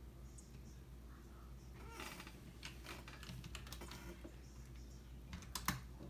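A run of quick, light clicks lasting about two seconds, then a louder cluster of clicks just before the end, over a faint steady low hum.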